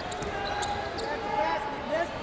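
Live court sound of a basketball game: a basketball being dribbled on a hardwood floor, with short squeaks and faint voices across the gym.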